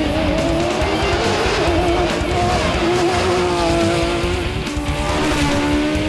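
Competition car and motorcycle engines driving hard up a winding road, the engine note wavering up and down as they take the bend, over background music.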